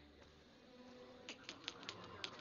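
Near silence: faint forest ambience with an insect-like hum, and a few soft clicks about one and a half seconds in.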